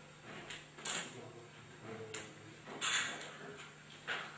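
Several short knocks and scuffs, the loudest a little under three seconds in, over a faint steady hum.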